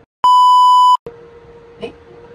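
One loud, steady electronic beep, a single high tone lasting under a second, with the sound cut to dead silence just before and after it: a censor bleep edited over the audio. Room noise with a low steady hum returns after it.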